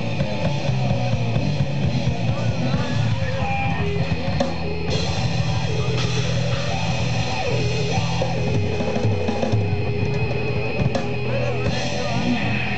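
Live rock band playing loudly through a PA: electric guitar and drum kit.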